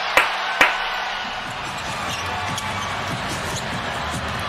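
Two sharp basketball bounces on a hardwood court in the first second, over steady arena crowd noise from an NBA game broadcast.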